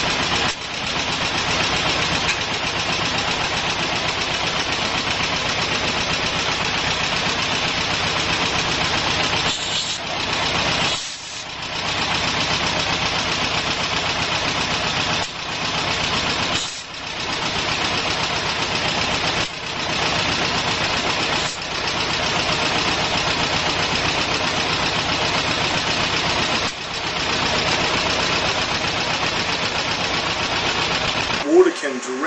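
Plasma water spark plug circuit arcing continuously: a loud, steady buzzing hiss that cuts out briefly about eight times.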